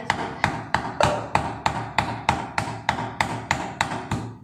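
A kitchen knife striking a green coconut in a steady run of sharp knocks, about three a second, as it hacks at a shell too hard and mature to take a straw.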